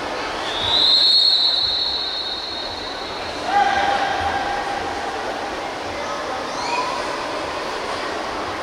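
A referee's whistle sounds one long, steady high blast about half a second in, the signal for the swimmers to step up onto the starting blocks. A lower held tone follows a few seconds later, over the steady murmur of the pool hall.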